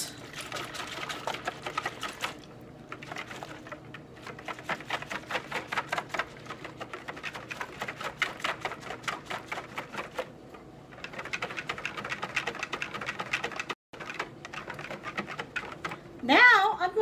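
Wire balloon whisk beating egg yolks and water in a plastic bowl: fast, steady clicking and tapping of the wires against the bowl, with two short pauses.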